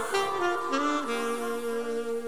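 Live band music closing a song. A short run of changing notes on a saxophone-like lead leads into a steady held final chord.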